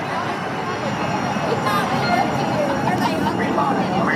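Crowd chatter: many people talking at once over a steady background rumble.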